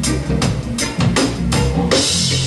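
Live reggae band playing: a drum kit keeps a steady beat, about two and a half strokes a second, over a deep bass line.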